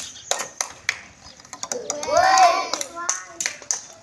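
A child's high-pitched shout about two seconds in, among scattered sharp taps and knocks.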